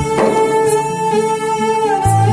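Background music score: long held notes over a low line of short, stepping notes.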